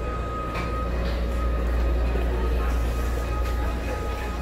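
Steady low rumble of restaurant room noise, with faint background music over it.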